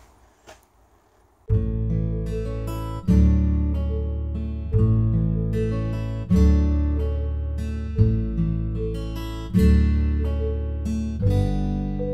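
Background music: acoustic guitar strumming chords at an even pace, coming in about a second and a half in after a brief near-quiet moment.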